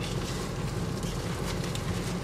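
Steady low hum of a car's idling engine, heard from inside the cabin.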